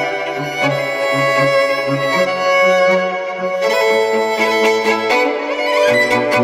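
Four overdubbed violin parts playing a quartet in sustained bowed chords. The harmony changes every second or two, with a marked shift a little past halfway.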